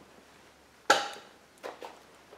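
A single sharp knock with a short ringing decay, as of a small hard object struck, followed by two lighter clicks, over quiet room tone.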